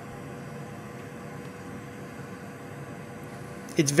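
Steady low hiss with a faint hum, even throughout and without distinct knocks or clicks, until a man's voice begins near the end.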